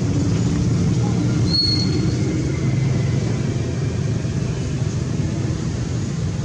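Steady low background rumble of outdoor noise, with a brief high chirp about a second and a half in.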